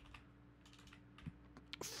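A few faint, separate keystrokes on a computer keyboard as a word is typed, over a low steady hum.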